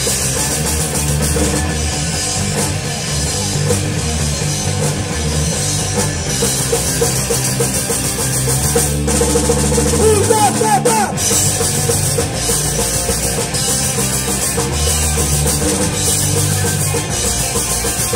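Punk rock band playing live: distorted electric guitars, bass and a full drum kit driving a steady rock beat.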